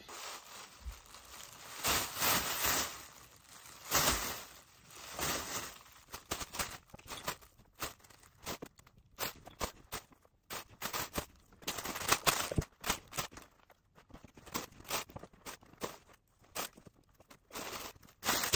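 Thin plastic shopping bags stuffed with clothes crinkling and rustling as they are handled, in irregular bursts with sharp crackles.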